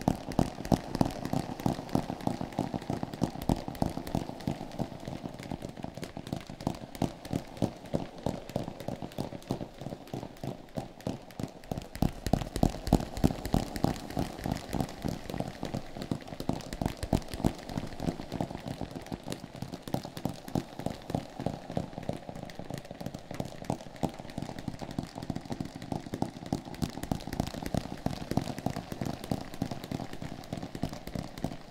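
Fast fingertip tapping on a hard object, many taps a second in a continuous patter, with added echo and reverb trailing each tap.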